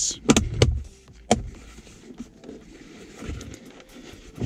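Shift boot and its trim surround being pressed and clipped back into a car's center console, with three sharp clicks in the first second and a half, then soft rustling of hands on the boot.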